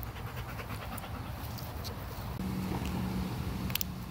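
Husky panting close to the microphone, in quick even breaths. A couple of sharp clicks come just before the end.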